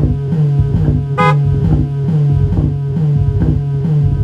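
Electronic synthesizer music: a sequenced low synth note pulses about twice a second under steady higher tones, and a brief bright high-pitched blip sounds about a second in.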